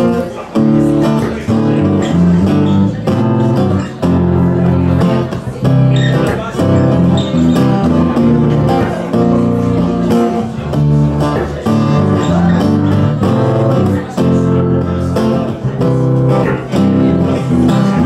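Live acoustic guitars strumming a rhythmic chord pattern over a strong low bass line, an instrumental passage between sung verses of a French folk-pop song.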